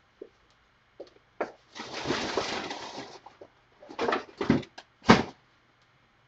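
Handling noise: a rustle of things being shifted about two seconds in, then several sharp knocks and clunks of hard objects being moved, the loudest just after five seconds in.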